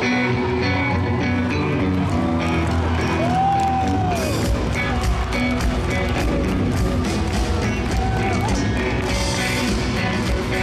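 Rock band playing live on electric guitars, bass and drums, heard through the arena's PA with the hall's echo. About three seconds in, a single note slides up and back down over the band.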